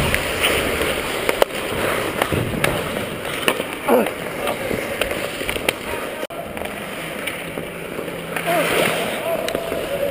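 Ice hockey skates scraping and carving on rink ice during play, with a few sharp clacks of sticks and puck, the sharpest about one and a half seconds in.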